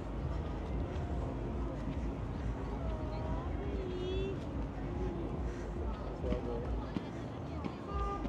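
Outdoor crowd ambience: scattered voices of passersby talking over a steady low rumble.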